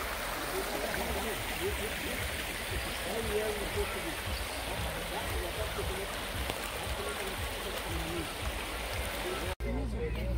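Shallow river water running over a stony bed, a steady rushing sound, with faint voices in the distance. It cuts off suddenly near the end.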